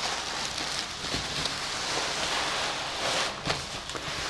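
Cellophane wrapping and tissue paper crinkling and rustling as a packed item is handled and unwrapped, a steady crackling with a couple of sharper crackles.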